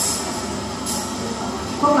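A pause in a woman's speech played over a loudspeaker, filled by steady noise with two brief hisses near the start and about a second in; her voice resumes near the end.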